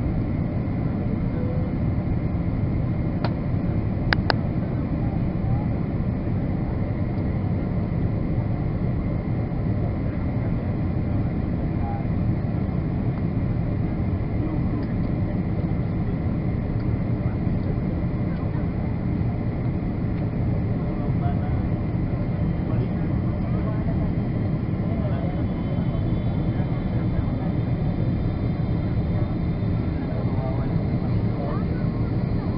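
Steady cabin roar of a Boeing 777 descending toward landing: engine and airflow noise heard from a window seat beside the engine. Two brief clicks come about three and four seconds in.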